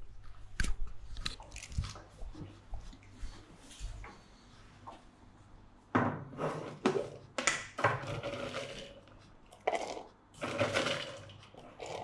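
A plastic container of dry dog treats being opened and handled: a few light knocks at first, then scraping and crunchy rattling bursts from about six seconds in as the lid is worked and treats are taken out.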